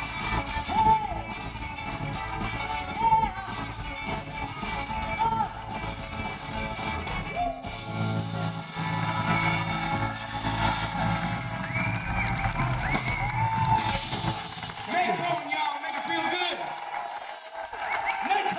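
Live blues band playing: electric guitar lines over bass and drums, ending on a long held chord; about 15 seconds in the band stops and the crowd cheers and whoops.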